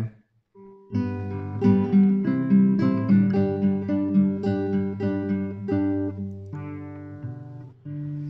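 Acoustic guitar strumming the introduction to a hymn: a run of chords starting about a second in, each struck chord ringing on, fading out shortly before the singing begins.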